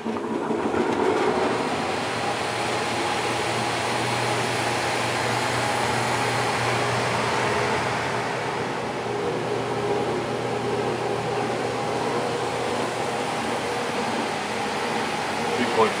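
Lennox atmospheric gas furnace running: a steady rushing roar with a low hum, building over the first second and then holding even.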